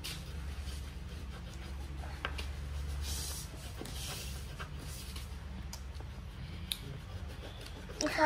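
Coloured pencils scratching and rubbing on paper as two children colour in quickly, with a few light ticks of pencil on desk. A low steady hum runs underneath.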